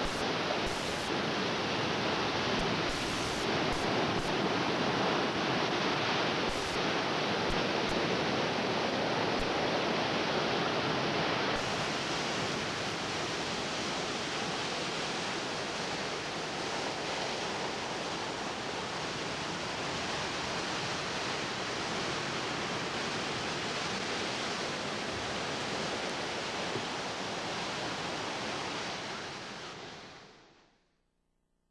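Steady rush of ocean surf, fading out at the end.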